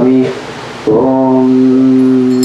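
A male voice chanting a Sanskrit mantra and holding one long, steady note. It follows a brief breathy hiss about half a second in, and the note starts near the one-second mark.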